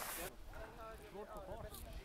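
Faint voices of people talking in the distance, over a low rumble.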